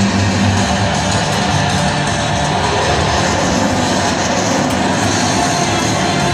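Loud, guitar-driven music played over an arena's PA system, steady and unbroken, with the noise of a large crowd mixed in.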